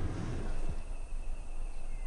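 Outdoor bush ambience: a low steady rumble, and from about half a second in, an insect's thin, steady, high-pitched whine.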